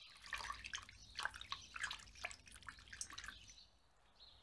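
Faint, irregular clicks and taps of a stone pestle grinding fresh herb leaves in a stone mortar, stopping near the end.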